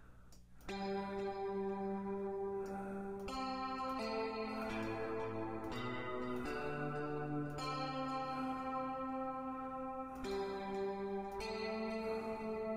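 Ableton Live 9's Ionosphere Guitar software instrument playing a slow line of single, long-ringing notes. The first note starts just under a second in, and a new one follows every one to two seconds. Only the guitar sounds, with no piano doubling it.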